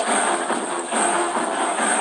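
Loud music playing.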